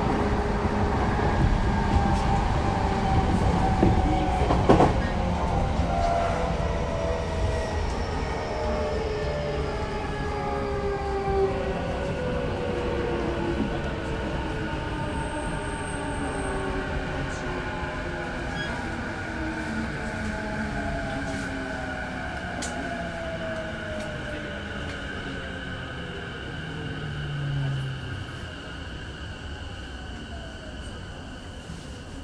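Electric commuter train heard from inside the car, its traction motors whining in several tones that fall steadily in pitch as the train slows down. There is a sharp knock about five seconds in and a brief low hum near the end.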